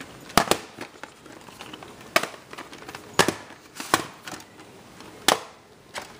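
VHS cassettes in plastic cases being handled and set down, with about six sharp plastic clacks and knocks spaced irregularly over quiet room tone.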